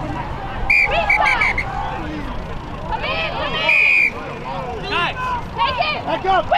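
Many voices shouting and calling out across a rugby pitch from players and sideline spectators, overlapping and without clear words, with a few short, high, held calls about a second in and again near the middle.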